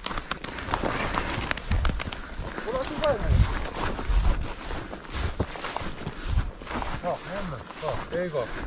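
Footsteps on frost-covered grass and ground: irregular low thuds and rustles. There are faint brief voices or laughter about three seconds in and again near seven seconds.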